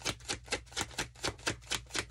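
A tarot deck shuffled by hand: cards slapping together in a quick, even rhythm of about five clicks a second.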